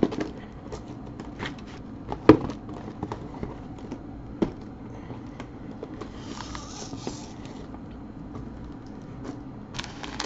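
Foil-wrapped trading card packs being moved and stacked on a table: scattered light taps and crinkles, with a sharper knock about two seconds in and another about four and a half seconds in.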